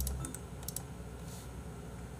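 A few light computer clicks in the first second, then only faint room noise.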